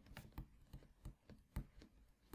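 Faint irregular taps and scratches of a stylus on a drawing tablet as a word is handwritten, the clearest about half a second and a second and a half in, over near silence.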